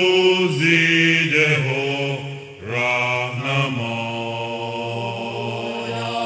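Mixed choir singing a hymn in sustained chords, phrase by phrase. A short breath break comes past the halfway point, and the voices settle into a long held chord near the end.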